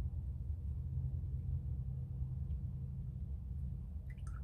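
Steady low hum of room tone with no distinct sounds on top of it.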